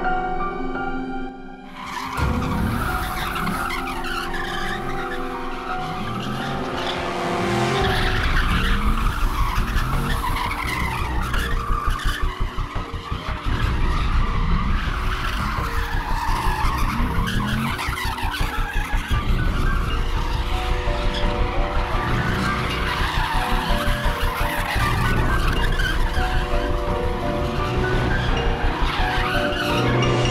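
Car tyres squealing and engine revving hard, starting about two seconds in, with background music and a steady beat running underneath.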